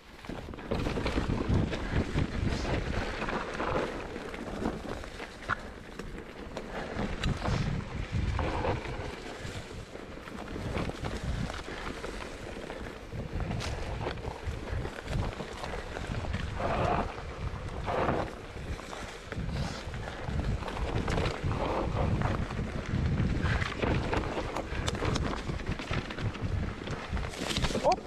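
Wind buffeting the microphone over the steady rumble of a mountain bike descending a dirt trail covered in dry leaves, with the tyres crunching through the leaves and the bike rattling and knocking over bumps.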